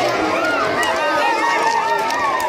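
Many children's voices chattering and calling out at once, high-pitched and overlapping, close to the microphone.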